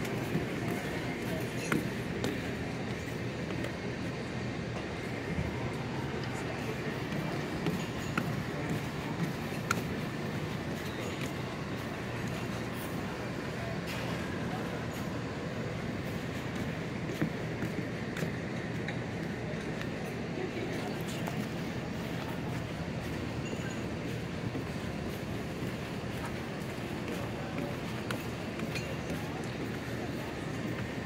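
Steady background murmur of indistinct voices with occasional light ticks and clinks.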